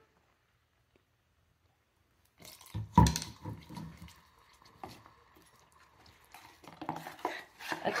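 After a couple of seconds of silence, kitchen handling sounds as vinegar is spooned into hot, bubbling candy syrup in a nonstick pot. There is a single loud thump about three seconds in, then light clinks of a metal measuring spoon against the pot.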